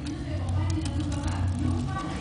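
A steady low hum, with scattered faint clicks and rustles as the thick, chunky salsa is handled.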